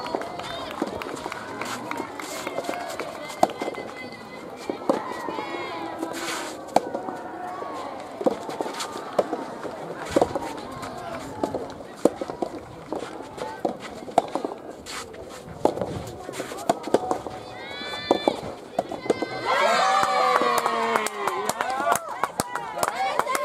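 Soft tennis rally: the soft rubber ball struck by rackets with sharp pops about once a second, while players and team members call out. Near the end several voices break into loud shouting as the point is won.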